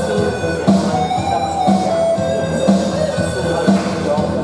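Electric guitar playing a slow melodic line of held notes, over a steady low thump about once a second.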